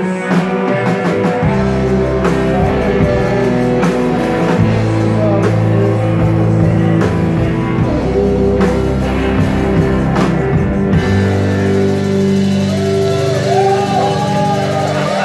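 A live rock band plays loud, with electric guitars and drums.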